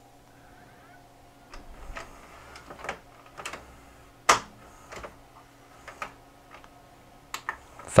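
VHS mechanism of a Sanyo FWZV475F DVD/VCR combo loading a cassette and threading the tape. A faint steady motor hum runs under a series of mechanical clicks and clunks, the loudest about four seconds in. The capstan motor is a used replacement taken from a scrap unit.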